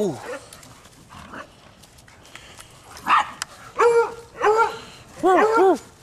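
Dogs barking and yipping while play-fighting: mostly quiet at first, then single sharp barks from about three seconds in and a quick run of several near the end.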